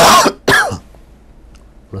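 A man coughing twice behind his hand: two short, harsh coughs about half a second apart, the first the louder.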